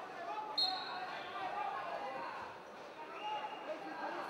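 Hall crowd voices, with a short, sharp whistle blast about half a second in, the loudest sound here, as the referee restarts the wrestlers. A second, longer high whistle tone comes near the end.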